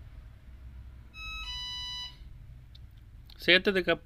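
Electronic two-note chime: a short higher beep about a second in, then a lower tone held for under a second. It is the sound effect of an animated subscribe-button overlay being clicked.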